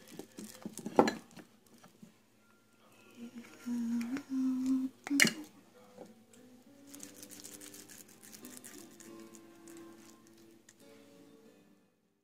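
Hands scooping and pressing sticky ground-chicken sausage mix with a plastic measuring cup in a glass bowl, with two sharp knocks of the cup against the bowl, about a second in and about five seconds in. Soft music with held notes comes in for the second half.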